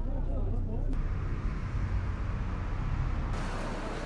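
Street traffic: a steady low rumble of passing cars, with a brighter hiss joining about three seconds in.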